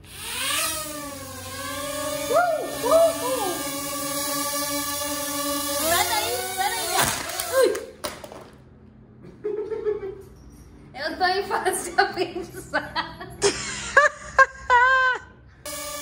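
A sung melody over a music track for about the first half, cutting off suddenly; after a short lull come laughter and brief exclamations.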